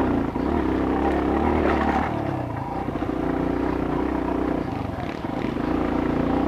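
Dirt bike engine running steadily on a trail, its pitch rising and dipping a little as the throttle is worked.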